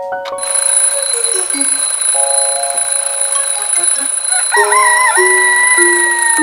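Twin-bell alarm clock ringing steadily, starting about half a second in, with children's music playing beneath it.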